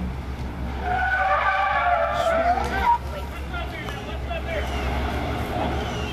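Car tyres squealing on pavement for about two seconds as a car skids through a cone course, ending with a short loud sound, over a steady low rumble.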